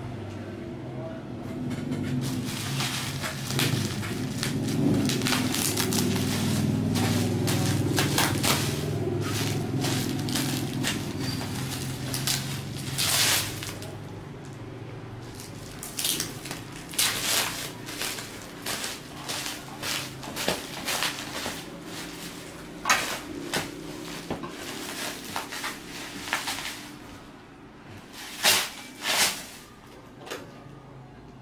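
Bubble wrap crinkling and rustling as it is handled and pulled off a wooden baby bed frame, with a few sharper knocks near the end. Low voices murmur through the first half.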